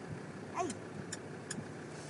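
A car's engine idling steadily under a short exclamation, with three light clicks in the second half.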